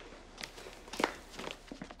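A few footsteps on a hard floor indoors, the loudest step about a second in.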